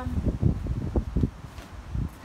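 Wind buffeting the microphone: an irregular low rumble with several stronger gusts.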